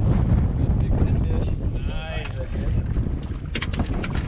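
Wind buffeting the microphone on an open boat, a steady low rumble. About two seconds in there is a brief vocal sound, and a few sharp clicks follow near the end.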